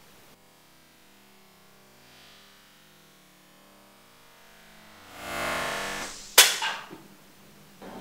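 A faint low hum, then about five seconds in a whoosh that swells and ends in a single sharp crack, the loudest sound, with a smaller snap right after it. It is timed to a playing card being flicked off the hand in a slow-motion throw.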